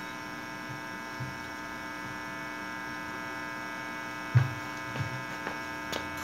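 Steady electrical mains hum from a plugged-in electric guitar and amplifier rig left live after playing stops, made of many steady tones. A low thump comes a little over four seconds in, with a few lighter knocks near the end.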